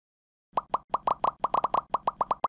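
A rapid run of about ten short cartoon pop sound effects, each dropping quickly in pitch, starting about half a second in.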